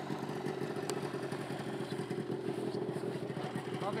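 Snowmobile engine idling steadily, with a fast, even pulse.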